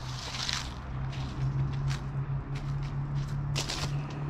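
Footsteps on dirt ground scattered with dry fallen leaves, a series of short crackling steps under a low steady hum.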